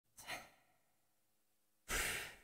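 Two short, faint breaths from a person: one just after the start and one at the very end, with near silence between.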